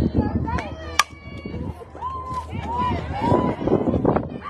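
A softball bat strikes the pitched ball with a single sharp crack about a second in. Players and spectators shout afterwards.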